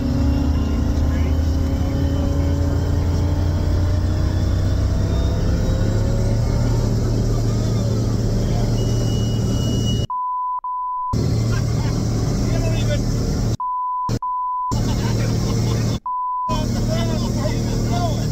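Carbon Cub UL's turbocharged Rotax 916 iS engine and MT propeller at full takeoff power, heard in the cockpit, rising in pitch over the first few seconds. Later the pilot's exclamations are cut out by bleeps three or four times.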